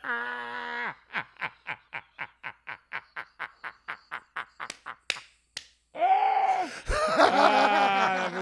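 Two men laughing hard: a drawn-out groaning laugh, then a breathless run of quick rhythmic laughs at about five a second, then a louder full-voiced burst of laughter near the end. A couple of sharp slaps land in the middle.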